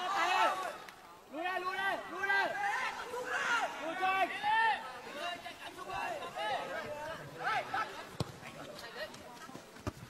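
Men's voices shouting and calling to one another during play on a small-sided football pitch, well below commentary level. A single sharp knock sounds about eight seconds in.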